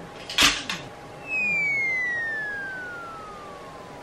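A sharp knock about half a second in, then a long whistle-like tone falling smoothly in pitch for nearly three seconds: a comic descending-whistle sound effect.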